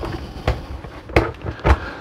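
A few soft, short knocks and handling noises over low background noise.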